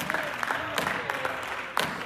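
A congregation responding with scattered hand claps and faint voices calling out. The claps come irregularly, one sharper one near the end.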